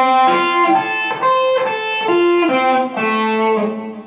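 Electric guitar playing a lick slowly, one note at a time: a string of about a dozen single notes, each held briefly, stepping up and down in pitch.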